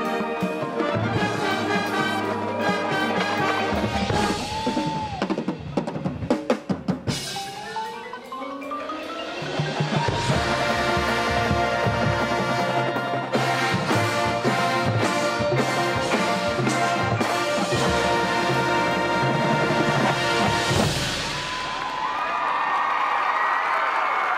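High school marching band playing the close of its show: brass and winds with a drumline and a marimba front ensemble, sharp snare and drum hits a few seconds in, then a rising run into loud held full-band chords that end about 21 seconds in. Crowd cheering takes over near the end.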